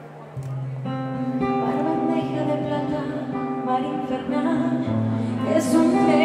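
Acoustic guitar playing a slow instrumental passage of a ballad, with held chords ringing. It comes in after a brief quiet dip at the start and grows a little louder toward the end.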